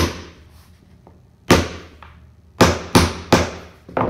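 Hammer striking a steel nail set, sinking finish-nail heads below the surface of a new red pine plank floor so the sander won't grind them. Sharp ringing strikes: one at the start, one about a second and a half in, then three in quick succession near the end.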